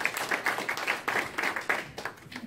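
Audience applauding, a dense patter of many hands clapping that stops near the end.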